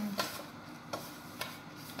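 Fingers rubbing butter into flour in a plastic mixing bowl: a soft rustle with a few brief scratchy strokes as the mixture is worked to a crumb.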